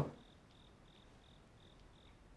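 Faint chirping of an insect, a short high-pitched pulse repeating about three times a second.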